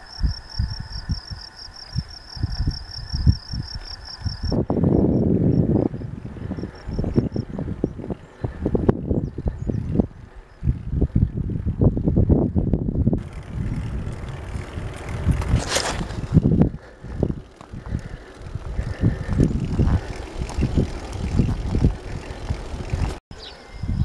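Insects, crickets by their sound, chirping in a rapid pulsing trill, which stops after about four seconds; then wind buffets the microphone in uneven gusts.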